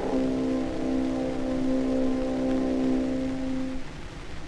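Orchestra in an early acoustic recording holding a final sustained chord, which fades out near the end. Under it runs the hiss and crackle of the shellac 78 rpm disc's surface noise, which carries on alone once the chord has died away.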